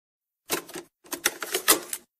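Two bursts of fast, dense clattering clicks, like typewriter keys, the first starting about half a second in.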